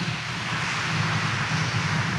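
A church congregation applauding, a dense, steady clapping that starts right after the call to praise God.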